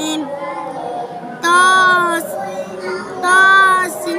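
A young girl reciting the Quran in a sing-song chant, drawing out two long held notes, one about a second and a half in and another near the end.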